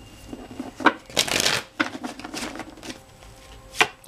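Tarot cards being shuffled and handled, with a papery swish of the deck about a second in and sharp card taps a little before it and near the end.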